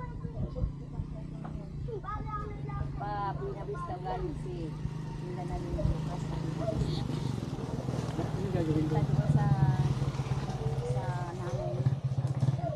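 Indistinct talk of several people, over a steady low motor hum that grows louder about two-thirds of the way through.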